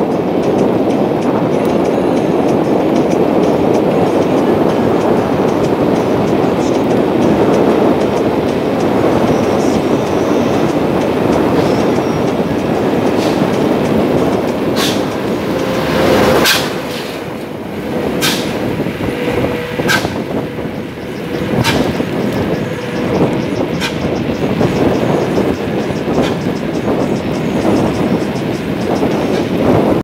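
Wind rushing over a phone's microphone on a fast bicycle descent: a loud, steady rushing noise that eases and turns uneven about halfway through. A string of sharp clicks or knocks comes every second or two in the second half.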